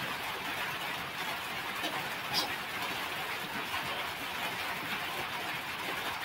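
Steady background hiss with no speech, and one faint click about two and a half seconds in.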